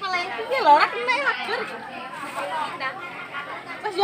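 Several people talking at once: background chatter of voices, clearest in the first second or so, then softer.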